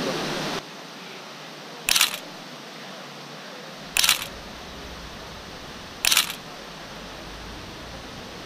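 Three single-lens reflex camera shutter clicks, about two seconds apart, over a low steady hiss. The rushing noise of a fountain cuts off just after the start.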